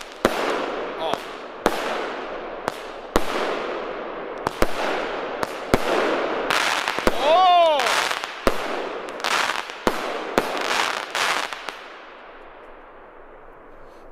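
Consumer firework cake firing a rapid, irregular string of sharp shots. Its shells burst into dense crackling ('krakling') stars, and the crackle fades away near the end.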